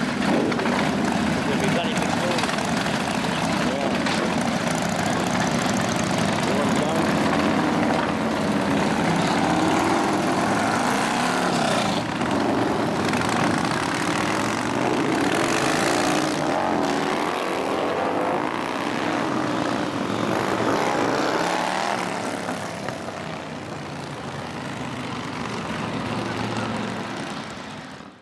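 Several Harley-style cruiser motorcycles riding off one after another, engines running and revving as each pulls away. The sound fades out near the end.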